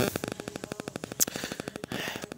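Rapid, even mechanical knocking of a running machine, about twenty beats a second. There is a louder knock at the start and a sharp click a little over a second in.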